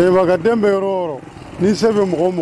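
A man speaking, with a short pause a little past the middle.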